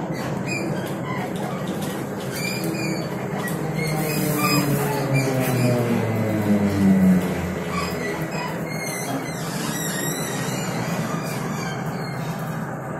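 Ride inside a TrolZa-62052 trolleybus: a steady rumble with a whine of several tones that fall in pitch over a few seconds in the middle, typical of the electric traction drive as the trolleybus slows, and light rattling clicks from the body.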